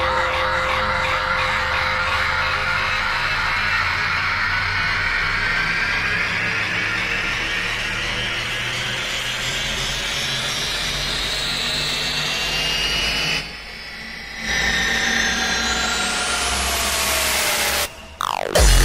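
A hardcore techno DJ mix in a beatless build-up: a sustained bass drone under layered synth tones that slowly rise in pitch. It dips out for about a second two-thirds through, then a steep upward sweep climbs near the end and cuts off just before the drop.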